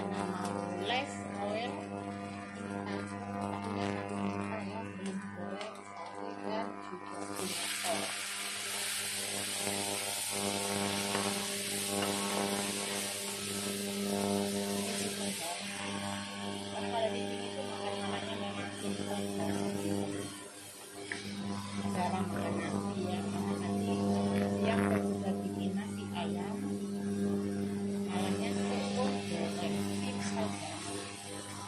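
Stir-frying in a wok: a wooden spatula scrapes and tosses food in hot oil, with a loud sizzle lasting about eight seconds from about seven seconds in as vegetables go into the pan. A steady hum runs underneath.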